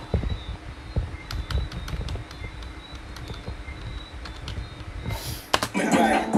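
Scattered clicks of computer keys being pressed, with dull low bumps of handling on the desk. Near the end a rap song starts playing again.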